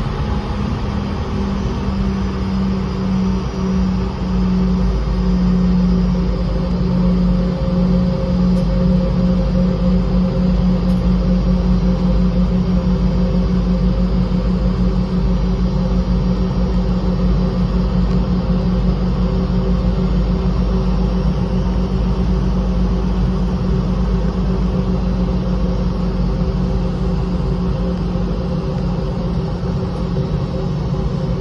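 Cabin noise inside a Boeing 717-200 taxiing: a steady, loud low rumble from its rear-mounted Rolls-Royce BR715 engines at taxi power and the rolling airframe, with a steady droning hum that pulses rapidly.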